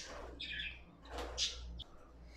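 Budgerigars chirping: a few faint, short high-pitched calls, one about half a second in and more around a second and a half in.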